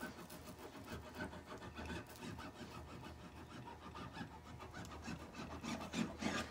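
A metal hand tool rubbed back and forth in quick, irregular strokes along screen-printing mesh over an aluminum frame's edge, pressing the mesh into the frame's adhesive.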